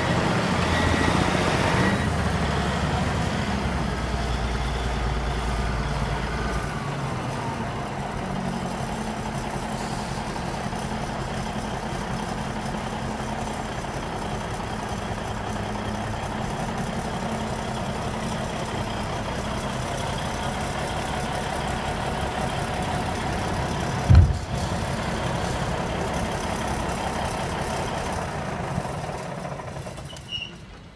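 Caterpillar 980F wheel loader's diesel engine running, louder and higher for the first couple of seconds, then easing down to a steady low run. A single sharp thump stands out late on.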